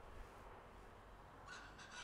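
Near silence: faint outdoor background noise, with a slight soft sound shortly before speech resumes.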